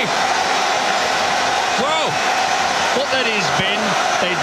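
Stadium crowd cheering, a steady wall of noise, with a few pitched calls that rise and fall about two seconds in and again near the end.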